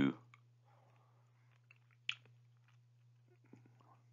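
A pause in a man's speech: faint mouth clicks and a short lip smack about two seconds in, over a low steady hum.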